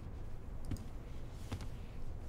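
A computer mouse clicked twice, two short sharp clicks a little under a second apart, over quiet room tone.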